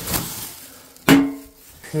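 A sharp knock about a second in, followed by a short ringing tone that fades within half a second.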